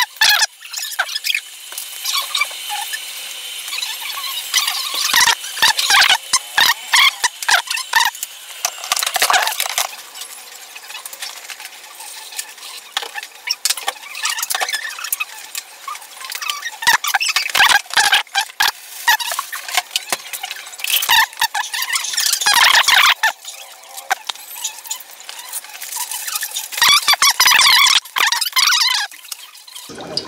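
Irregular high-pitched squeaks and clicks of vegetables being cut by hand over a bowl, louder in bursts about two-thirds of the way through and again near the end.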